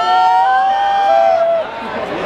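A small group of people letting out one long, held cheering shout together, rising at the start, then holding steady before it breaks off near the end.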